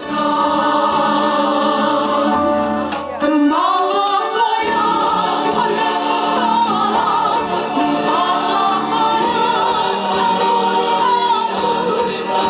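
A women's choir singing together in harmony into microphones, with a short break in the singing about three seconds in.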